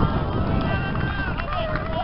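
Players' shouted calls across a football pitch during play, several voices overlapping, over a steady low rumble.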